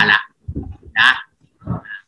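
A man speaking Thai in three short, separate syllables with pauses between, heard through a video-call connection.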